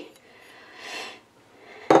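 A single soft breath of about half a second in a quiet room.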